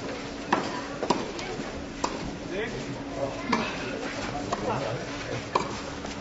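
Tennis balls being struck and bouncing during a rally, sharp knocks about five times at irregular intervals, over a murmur of spectator voices.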